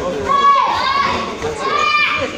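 Children shouting and calling out in high-pitched voices: one call about half a second in and another near the end.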